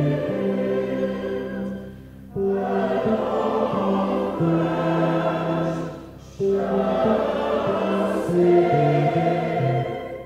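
Large mixed choir singing with orchestra, in long held phrases that break off briefly about two seconds in and again about six seconds in before each new phrase begins.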